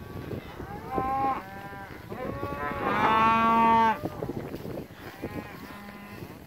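Cattle mooing while being driven by a herding dog: a short moo about a second in, then a longer, louder one around three seconds in.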